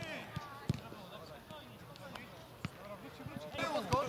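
A football on artificial turf thudding as it is kicked, four separate thuds spread unevenly over a few seconds. Players shout briefly, at the start and again near the end.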